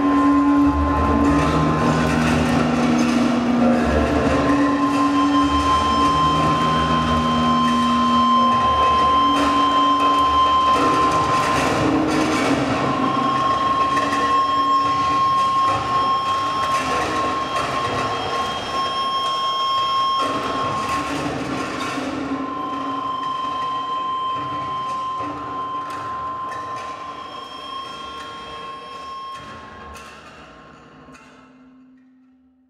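Live electroacoustic sound-art performance from mixers, electronics and small kinetic devices: a dense clattering noise with a steady high tone held throughout and low drones that switch on and off in the first several seconds. The whole texture fades out over the last several seconds.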